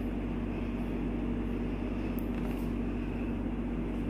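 A steady low machine hum, the room's background noise, with a couple of faint soft clicks a little past the middle as the rubber mudflap is handled.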